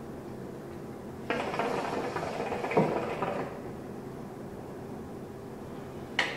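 Hookah being drawn on: water bubbling and gurgling in the base for about two seconds, then stopping.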